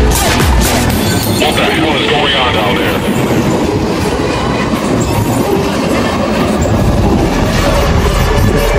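Skånetrafiken X61 electric multiple unit running slowly past close by, its wheels rolling and clattering on the rails. Electronic dance music is laid over it, with its beat strong for about the first second.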